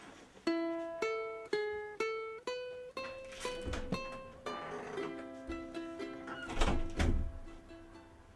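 Ukulele instrumental music: a melody of single plucked notes, about two a second, each ringing and decaying, starting about half a second in and stopping near the end. Two low thuds sound under it, about halfway through and, loudest, near the end.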